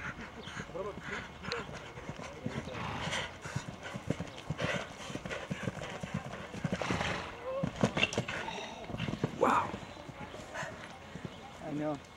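A horse cantering on grass turf: a run of hoofbeats that grows loudest as the horse passes close, about two-thirds of the way through.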